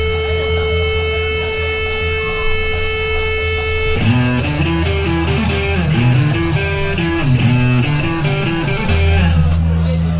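Live rock band with electric guitars, bass and drums: a long held note rings over a low drone, then about four seconds in the band comes in with a stepping riff.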